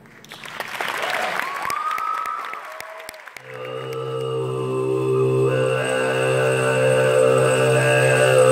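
Applause with whistling from the audience for about three seconds, then a steady low sung drone starts, with a separate high whistling overtone sounding above it, as in throat singing, and grows louder.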